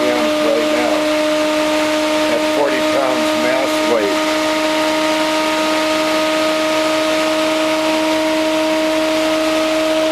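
Bedini-Cole window motor running at speed: a steady, even whine over a smooth hiss, a sound its builder likens to a turbine.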